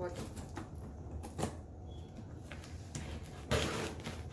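Packaging being handled: a few light knocks and rustles, then a longer, louder rustle or scrape near the end as a box or bag is moved.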